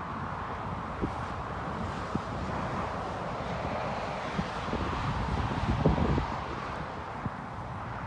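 Steady outdoor hum of distant road traffic, with wind rumbling on the microphone that swells about six seconds in, and a few light knocks.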